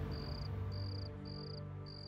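Crickets chirping in evenly spaced trills of one high pitch, about two a second, over a low, sustained background music drone that slowly fades.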